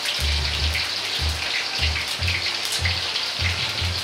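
Sliced pork being oil-blanched in hot oil in a wok: a steady, dense crackling sizzle of meat frying in the oil.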